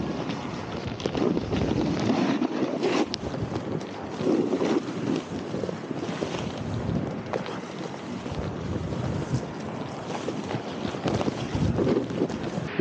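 Boards sliding and carving through deep fresh powder snow, a rushing hiss that swells and fades with the turns, with wind buffeting the camera microphone.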